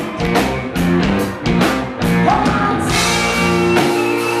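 Live rock band playing: drum kit, electric bass and electric guitar, with a quick run of drum hits in the first two seconds and a woman singing over the band after that.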